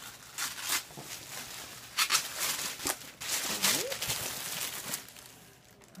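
Tissue paper rustling and crinkling in several irregular bursts as it is pulled open and unwrapped from a packed box.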